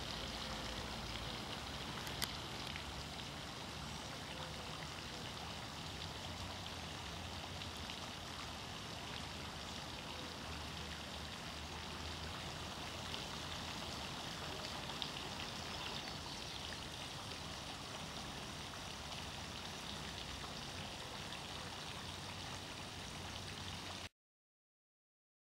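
Steady, even rushing noise, like running water, with a faint click about two seconds in.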